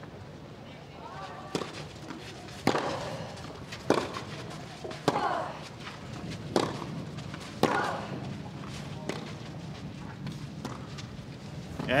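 Tennis rally: a ball struck back and forth with rackets, about eight sharp hits, one every second or so, with a player's short grunt on some strokes.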